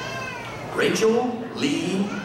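Audience members whooping and shouting in cheer for a graduate: a high call that falls in pitch, then louder shouts about a second in and again near the end.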